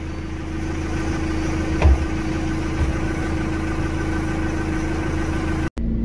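An engine idling steadily, with a single knock about two seconds in.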